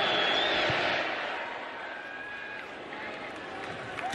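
Stadium crowd noise in a college football broadcast: a broad crowd hum, loudest at first and dying down over the next couple of seconds.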